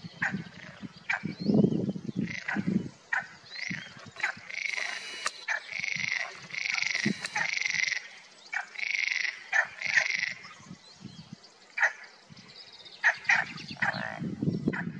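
Frogs calling from a pond: a series of buzzy croaks, each about half a second long, through the middle of the stretch, among shorter sharp calls and clicks.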